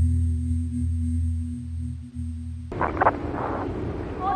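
Ambient drone music: a low steady hum with a faint high held tone. It cuts off suddenly about two and a half seconds in, giving way to loud rough background noise with a few brief voice-like sounds.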